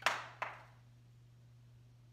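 Two sharp snips of floral shears cutting a lily stem, the first loudest and the second about half a second later.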